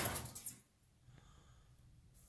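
A man's voice trailing off in the first half second, then near silence: quiet room tone.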